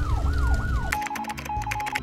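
Fire truck siren yelping in rapid rising-and-falling sweeps, about three a second, over a low engine rumble; it cuts off about a second in. A short electronic transition sound of quick clicks and a held tone follows.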